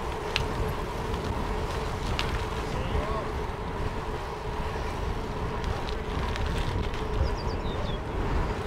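Steady wind rush on the camera's microphone of a moving bicycle, with road noise of gravel-bike tyres rolling on tarmac. A couple of light clicks come through, and faint voices sound briefly around the middle.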